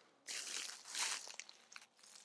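Footsteps crunching faintly through dry fallen leaves and twigs, a few crunches in the first half, fading toward the end.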